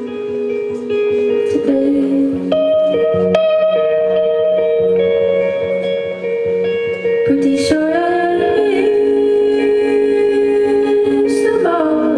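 Live music: an electric guitar with women's voices singing long, held notes, sliding between pitches a couple of times.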